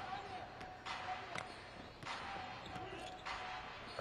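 Basketball bouncing on a hardwood court a few times during live play, heard faintly over the low background noise of an arena crowd.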